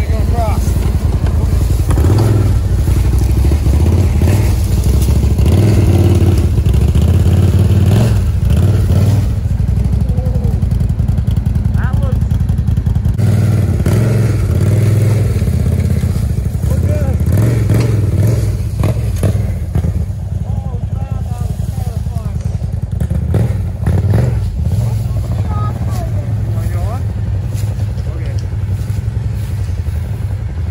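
ATV engines idling and running at low speed, a steady low drone, with people talking over it.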